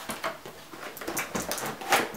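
Packaging rustling and clicking in the hands as an advent calendar compartment is opened and its contents, a pair of socks, are pulled out: a string of irregular small clicks and crinkles.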